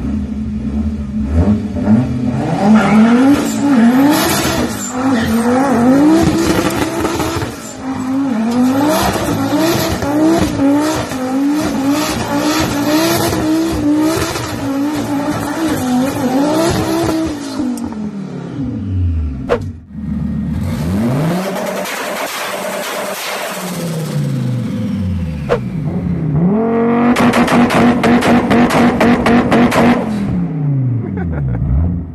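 A car engine revving hard over and over, its pitch swinging up and down every second or so, with tyre squeal from wheelspin as the car spins its tyres into thick smoke. Near the end another engine holds a steady pitch and pops rapidly, about five times a second, against a launch-control rev limiter (two-step).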